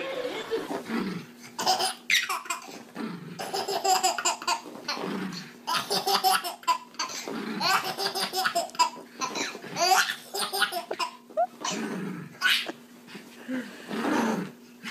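Babies belly-laughing hysterically, one burst of laughter after another.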